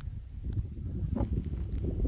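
Low wind rumble on a phone's microphone in open country, growing toward the end, with a few faint clicks.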